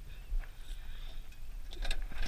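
Small go-kart engine stalled and silent: only a low rumble and a few faint clicks.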